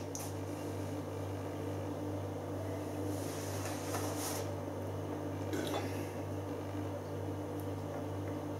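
Quiet room tone: a steady low hum, with a faint soft hiss about three seconds in and again near six seconds.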